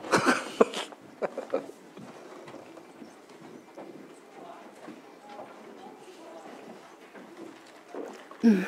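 A short burst of laughter, then the quiet tone of a meeting room with faint murmuring and a few small handling clicks.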